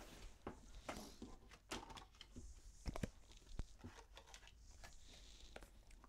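Tarot cards being shuffled and handled, with faint irregular taps and rustles of the cards.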